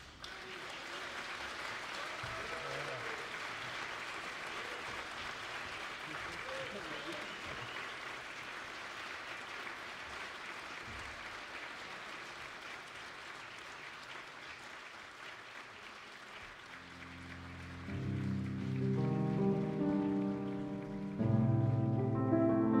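Theatre audience applauding, a steady clapping that slowly fades. Near the end, music starts.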